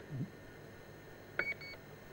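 Two faint, short, high electronic beeps in quick succession about a second and a half in, from the airship's onboard emergency rapid deflation device, signalling that the system is armed and working.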